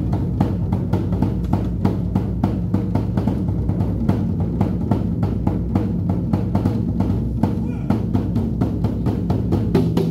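A troupe of large Chinese lion-dance barrel drums, struck together with wooden sticks, playing a fast, steady beat.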